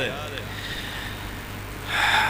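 Pause in amplified speech: the echo of a man's voice through the public-address system dies away, leaving a steady low electrical hum and hiss. A short breathy noise comes in near the end.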